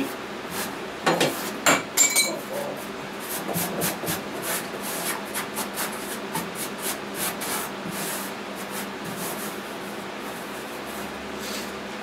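Used blasting sand, crumbly with blasted-off rust and paint, pouring out of a steel benchtop sandblast cabinet into a plastic jug: a steady rushing hiss full of small ticks, with a few louder knocks in the first couple of seconds.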